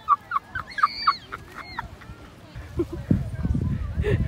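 A rapid run of about eight short, honk-like pitched calls in the first two seconds. From about two and a half seconds in, wind buffets the microphone with a low rumble.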